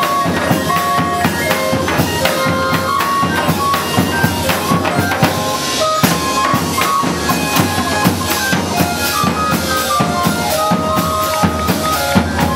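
A Chilean barrel organ (organillo) playing a melody in held, stepping pipe notes, with chinchinero bass drums and cymbals beating a steady, busy rhythm over it.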